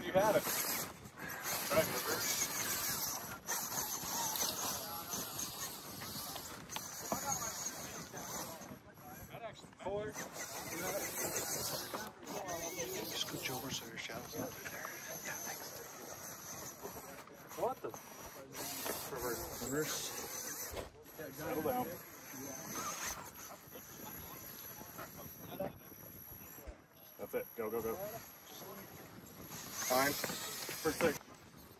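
Indistinct voices of nearby people, heard on and off, over a steady high hiss.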